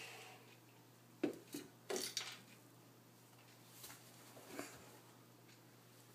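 A few short clinks and knocks of tableware at a breakfast table, the loudest about a second in, a quick cluster around two seconds and two softer ones later.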